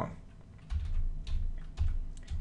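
Typing on a computer keyboard: a run of keystrokes, heavier from just under a second in, each with a low thud beneath the click.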